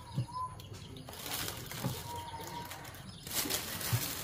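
Thin plastic bag rustling and crinkling as a whole plucked chicken is pulled out of it, loudest near the end.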